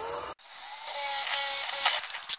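Cordless drill boring down through a wooden tiller: a brief spin-up whine, then the motor running steadily under load with the bit cutting into the wood.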